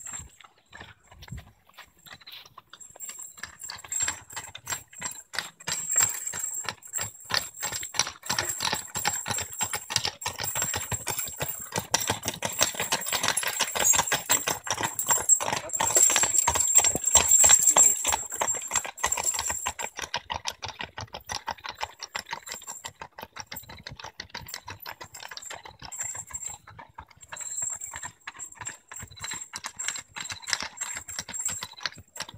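Hooves of a pair of draft horses clip-clopping as they pull a wooden-wheeled wagon past, with the wagon rattling along. The hoofbeats grow louder, are loudest a little past halfway, then fade.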